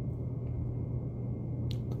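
Steady low room hum in a pause between words, with a couple of faint short clicks near the end.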